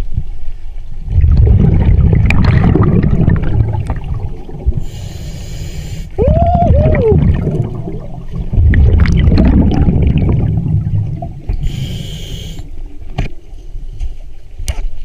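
Scuba diver breathing underwater through a regulator: two long bubbling exhalations, each followed by a short hiss of inhalation. A brief two-note squeak comes just after the first breath in.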